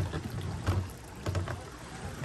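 Three soft low thumps about two-thirds of a second apart, over a faint steady outdoor background.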